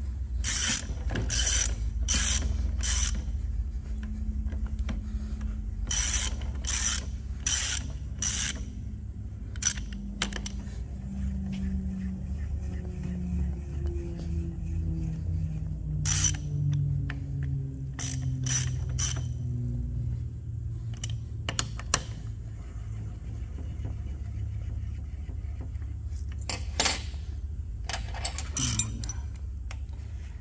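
Hand socket ratchet clicking in short runs as the bolts of a hydraulic pump's auxiliary pad mount are run down. Under it runs a steady low hum, and a low tone slowly falls in pitch through the middle.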